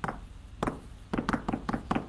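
Chalk tapping against a blackboard while words are written: a run of short sharp taps, most of them bunched in the second half.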